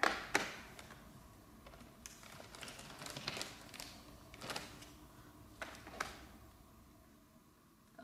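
Scattered light clicks and taps of plastic toy letters being handled and pressed into a plastic alphabet case, with some rustling of the plastic bag the letters are kept in.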